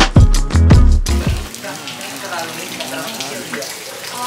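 Background music with a steady beat that cuts off about a second in. It gives way to the steady hiss of heavy rain falling, with faint voices.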